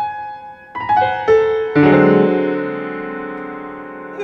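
Piano playing alone between the mezzo-soprano's phrases in an art song. A few single notes come in the first second and a half, then a fuller chord with low notes about two seconds in that is held and slowly dies away.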